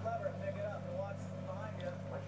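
Faint background speech, with a steady low hum underneath.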